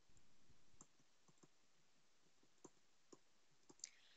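Near silence with a few faint, irregularly spaced clicks: a stylus tapping on a tablet screen while handwriting.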